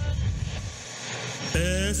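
A noisy, whooshing rush from the title sequence's sound effect fades down. About one and a half seconds in, music starts suddenly, with a singer gliding up into the first sung note of a ballad.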